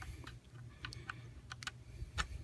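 A few faint, light clicks and scrapes of small plastic parts, mostly in the second half, as a USB cable's plug is pushed into the socket of a Sphero BB-8 toy's plastic charging base.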